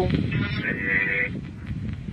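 Ghost box (spirit box) phone app sweeping through radio frequencies, playing choppy static through a small speaker. A brief rasping, garbled fragment comes through about half a second in, which the listeners take for a spoken 'sì'.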